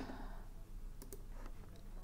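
Faint computer mouse clicks, two in quick succession about a second in, over a low steady room hum.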